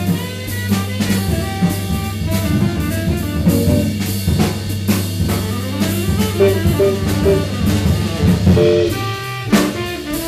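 Live jazz quartet playing a hard-bop blues on saxophone, guitar, Hammond-style organ and drum kit, with busy drum and cymbal strokes over a steady low bass line.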